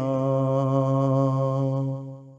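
A male singer holding the last vowel of a sung line on one steady note with a slight waver, the note starting to fade away near the end.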